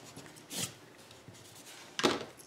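Pen working on paper: a short scratchy rub about half a second in, faint pen-on-paper noise, then another sharper scrape right at the end.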